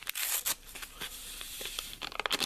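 Paper packet of unflavored gelatin being torn open: a few sharp crackles, then a steady papery rasp.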